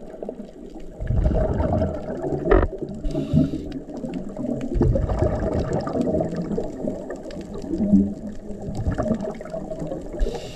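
Underwater scuba breathing heard through the camera: exhaled bubbles churning and gurgling, with a short hiss of an inhalation through the regulator about three seconds in.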